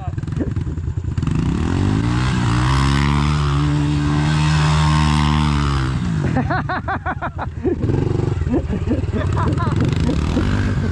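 A Honda pit bike's small single-cylinder engine revs up and is held at high revs for about four seconds while the rear tyre spins in the dirt in a burnout. The revs then drop away, and voices follow near the end.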